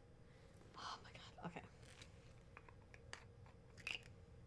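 Near silence: room tone with a faint breathy sound about a second in and a few small, soft clicks later on, the sound of a small cosmetic jar being handled.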